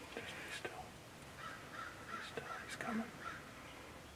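A bird calling in a quick series of about eight short notes, roughly four a second, starting about a second and a half in.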